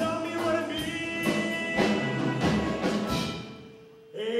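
Live pit orchestra playing a rock-and-roll style show tune. The music dies away in the second half, leaving one faint held note near the end.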